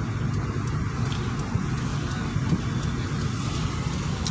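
Steady low hum of a Hyundai hatchback's engine and tyres on the road, heard from inside the cabin as the car drives along in third gear.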